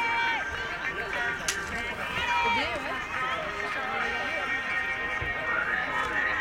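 Many overlapping voices, high-pitched children's calls and shouts held and rising across the field, with one sharp click about one and a half seconds in.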